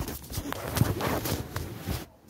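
Camera-handling noise: a quick run of rustling, rubbing and knocks close against the microphone as the phone is moved about.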